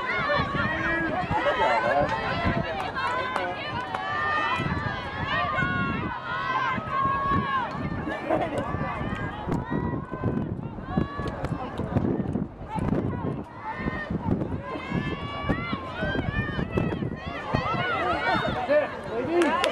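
Several voices shouting and calling over one another during live women's lacrosse play.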